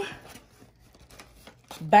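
Faint rustling and light taps of a cardboard cereal box being handled as its flaps are folded in.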